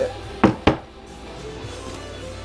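Two sharp knocks about a quarter second apart, the loudest sounds here, over steady background music.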